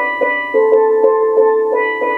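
Steel pan played with two mallets in double stops: two notes struck together and repeated in a quick, even rhythm of about five strikes a second, the notes ringing on between strikes. The pair of notes changes partway through.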